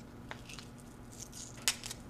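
Faint rustling of a strip of adhesive tape being handled, with a few light clicks, the sharpest near the end.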